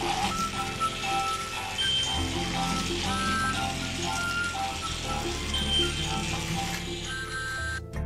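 Background music: a melody of held notes over a steady low bass, cutting off abruptly just before the end.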